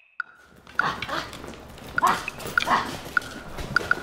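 Two dog-like yelps, about half a second apart near the middle, among many short high squeaks.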